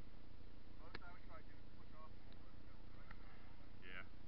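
Faint, indistinct voices over a steady low rumble, with one sharp click about a second in.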